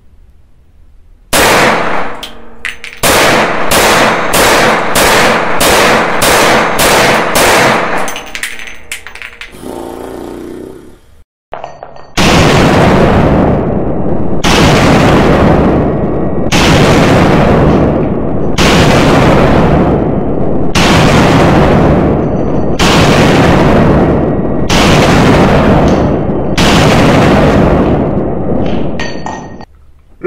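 Desert Eagle .357 Magnum pistol firing in an indoor range: a quick string of shots, then a slower series of about nine heavy shots roughly two seconds apart, each ringing on in the room's echo.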